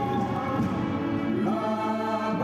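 Live concert recording of an orchestra playing held chords, moving to a new, higher chord about one and a half seconds in.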